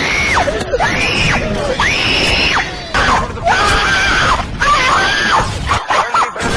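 A series of high-pitched, drawn-out vocal cries, about half a dozen, each rising and then falling in pitch. They stop abruptly just before the end.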